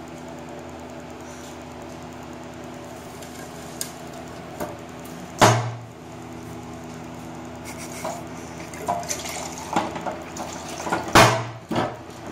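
Cut-glass water pitcher handled over a glass tabletop and water poured into a glass tumbler, with two louder knocks about five and eleven seconds in and small clinks in between, over a steady low hum.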